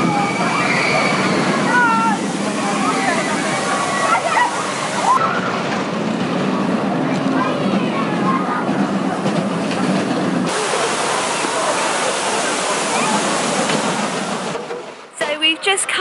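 Stand-up steel roller coaster train running along its track and through its loop, a steady loud rushing noise with a low rumble underneath.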